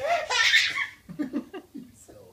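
A toddler laughing: a loud, high-pitched burst of laughter through the first second, followed by shorter, lower chuckles.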